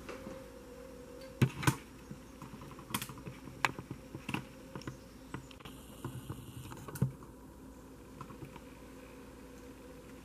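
Scattered light clicks and taps of oracle cards being handled on a cloth-covered table, loudest a little over a second in and again about seven seconds in.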